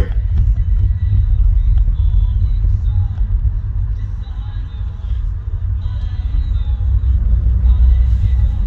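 Steady low rumble of a car driving slowly, heard from inside the car.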